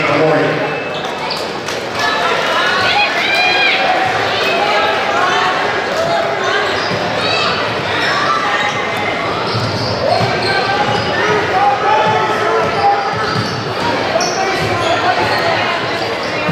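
Basketball game sounds in a large gym: many spectators' and players' voices calling and chattering, echoing in the hall, with a basketball bouncing on the hardwood court.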